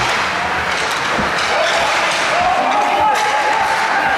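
Ice hockey play in an indoor rink: sticks and puck knocking, skates on the ice, and spectators' voices calling out, with a few sharp knocks including one about three seconds in.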